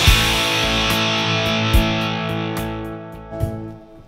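Fender Custom Shop 1964 Stratocaster Relic electric guitar through an amp: a chord is struck and left to ring, slowly fading away until it dies out near the end.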